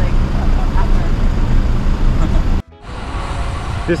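Road traffic idling at a junction, led by a double-decker bus's engine running with a steady low rumble, with faint voices. About two and a half seconds in it cuts off abruptly and gives way to quieter road and wind noise.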